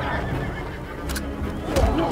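A horse whinnying, with sharp thumps about a second in and again near the end, the later one the loudest.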